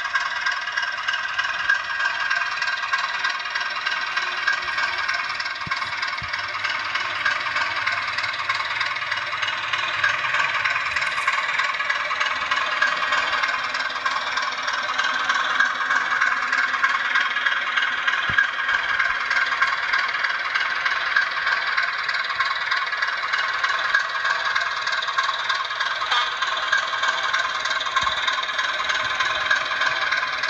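H0-scale model of a ČD class 751 diesel locomotive, its sound decoder playing a steady diesel engine sound through a small onboard speaker while the model runs slowly. The sound is thin, with little low end.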